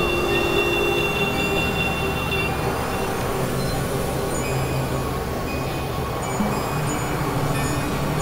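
Experimental drone and noise music: a dense, steady wash of noise with several held tones layered over it. A pair of high held tones drops out about two and a half seconds in.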